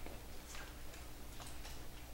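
A few faint, irregular clicks over a steady low hum of room tone in a meeting room.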